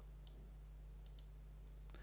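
Two faint, short clicks about a second apart, from a computer mouse, over a low steady electrical hum.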